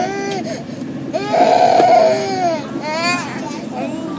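A young child crying: short, rising-and-falling sobbing wails, with one long, loud wail from about a second in to past the middle, then more short sobs.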